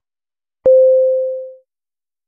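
A single electronic beep: one steady mid-pitched pure tone that starts with a click about half a second in and fades away over about a second.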